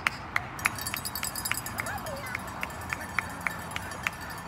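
Steady rhythmic hand clapping, about three and a half claps a second, with a voice calling briefly in the middle.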